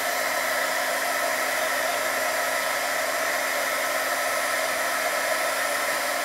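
Electric heat gun running steadily, a constant rush of hot air, used to warm a metal wax-working stylus.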